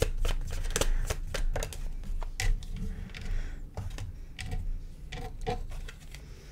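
Tarot cards being shuffled and handled: a run of quick papery clicks and snaps, busier at first and thinning out towards the end.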